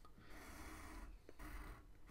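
Faint scratch of a graphite pencil drawing a line on paper.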